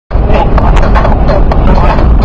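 Loud, steady low rumble of a car's cabin at highway speed, road and engine noise filling the bottom of the sound, with a person's voice faintly over it.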